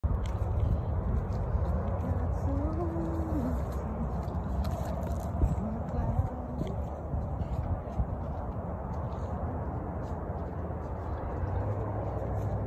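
Outdoor ambience while walking along a wooden boardwalk: a steady low rumble on the microphone, faint distant voices and a few scattered knocks.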